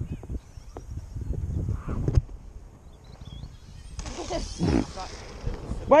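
Gusty wind rumbling on the microphone, with a few scattered knocks and a distant voice calling out about four and a half seconds in.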